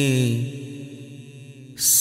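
A male voice singing a devotional manqbat holds a long note that fades out about half a second in, leaving a lull with a faint low hum. Near the end a sharp hiss marks the start of the next sung line.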